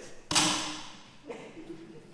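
One sharp whack of a thin wooden stick striking something, ringing away over about a second in the church's echo.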